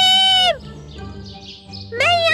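A high cartoon voice singing holds one long note that drops in pitch as it ends about half a second in. Soft background music carries on until the voice comes back at the very end.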